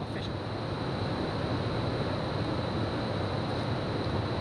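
Steady rushing noise of wind on the camera microphone and water around the kayak, with irregular low rumbling and a faint steady high whine.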